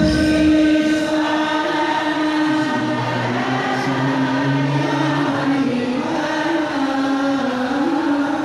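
Sholawat, Islamic devotional chanting, sung by many voices in unison through a sound system, in long held notes that move slowly up and down. A low accompaniment drops out less than a second in, leaving the voices.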